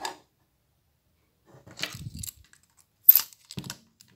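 Small plastic and metal clicks and rattles from a tailgate handle and lock mechanism being worked by hand as a key goes into its cylinder. The clicks come in scattered groups, and the sharpest and loudest falls about three seconds in.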